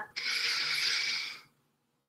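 A woman's deep audible inhale, a steady breathy hiss lasting just over a second that fades out.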